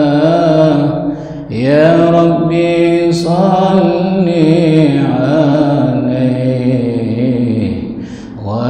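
A man's voice chanting shalawat, devotional Arabic praise of the Prophet, into a microphone. He sings in long, held, ornamented melodic phrases and breaks for breath about one and a half seconds in and again near the end.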